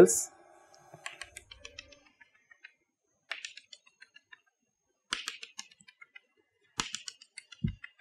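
Chalk tapping and ticking against a blackboard in several quick runs of short clicks, as dashed circles are drawn one dash at a time.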